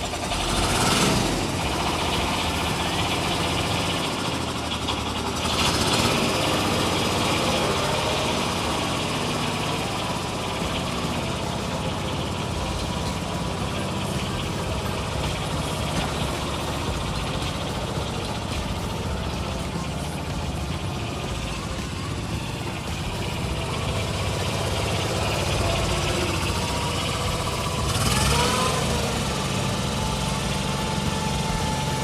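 Small diesel engine of an old Kubota compact tractor running steadily while the tractor is driven, getting briefly louder about a second in, around six seconds in and again near the end.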